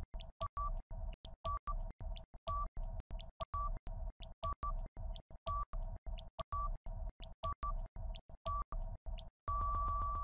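Countdown timer sound effect: rapid ticks, about four a second, with a higher beep once a second. It ends in a long beep as the timer reaches zero.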